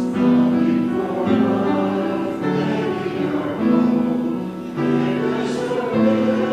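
Congregation singing a hymn together in slow, held notes, the chord changing about once every second or so.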